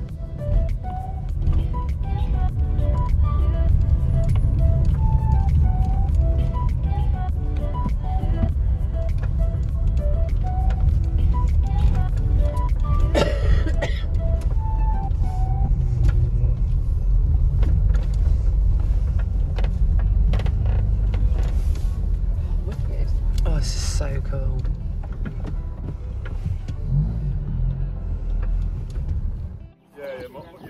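Steady low rumble of road noise inside a moving vehicle's cabin, with music playing over it. Two short knocks cut through it, about a third and four-fifths of the way in.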